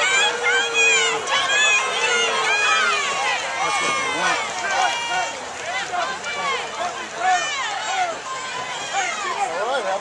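Crowd of spectators shouting and cheering at a high school football game, many voices at once, loudest in the first few seconds and easing off after.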